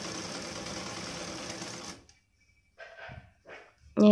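Sewing machine stitching steadily through fabric, stopping abruptly about halfway through, followed by two faint brief sounds.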